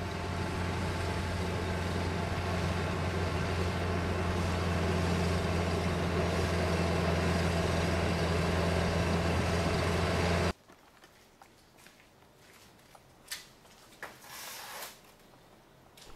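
Tractor engine running steadily under load as its rotary tiller churns a flooded rice paddy. About two-thirds of the way through, it cuts off abruptly, leaving near quiet with a few faint clicks.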